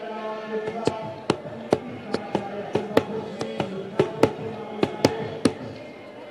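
Traditional group song with long held notes, cut through by about fourteen sharp, irregularly spaced percussive strikes.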